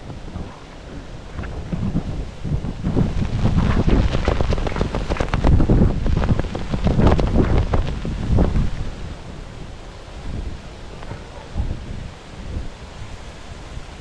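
Strong storm wind gusting over the microphone, a loud rumbling buffet that swells through the middle and eases off toward the end.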